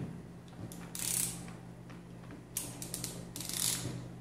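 Hand ratchet with a socket clicking in two spells, a short one about a second in and a longer one in the second half, as a pressure gauge is snugged lightly into a PCP air rifle's valve.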